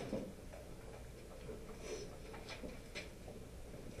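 Quiet room tone with a low background hum and a few faint, short clicks around two to three seconds in.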